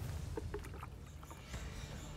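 Faint splashing and dribbling of water poured from a plastic jug onto soil and plants, with a few light ticks.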